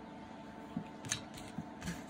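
About four light clicks and taps of a plastic ruler and pen being picked up and handled, in the second half, over a faint steady hum.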